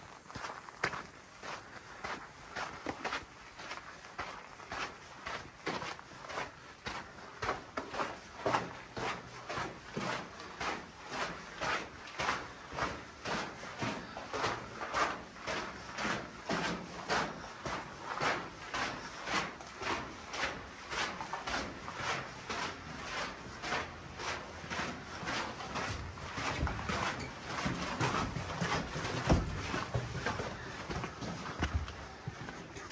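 A hiker's footsteps on a dirt and gravel trail inside a rock-cut tunnel, an even walking pace of about two steps a second.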